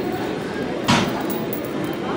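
A single sharp metal clink about a second in, from the steel chain of a dip belt being handled, over steady gym background noise.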